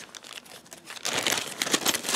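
Clear plastic zip-top bag crinkling as it is handled, faint at first and then a rapid run of crackles in the second half.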